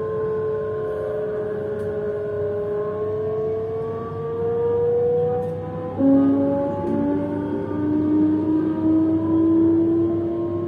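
Electric train's traction motors whining as it picks up speed, the tone slowly rising in pitch. About six seconds in a second, lower whine cuts in suddenly and louder, and it too climbs steadily.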